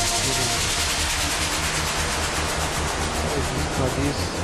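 Electronic background music: a fast, pulsing bass beat under a hissing noise sweep that thins out over the few seconds.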